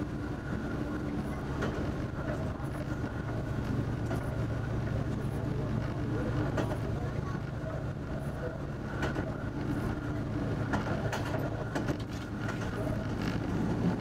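Diesel railcar running along the track, heard from inside the driver's cab: a steady engine drone with short clacks of the wheels over the rails every second or so, at irregular spacing.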